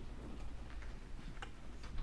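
Quiet room tone with a steady low hum and a few faint ticks, the clearest about one and a half seconds in.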